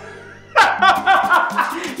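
A man starts laughing loudly about half a second in, a mocking laugh, over background music.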